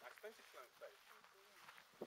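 Faint, distant voices of people talking, barely above near silence.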